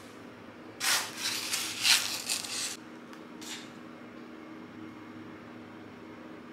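Canvas tote bag rustling as it is handled and packed, a noisy burst of cloth rustle lasting about two seconds from about a second in, with a short, softer rustle a little later.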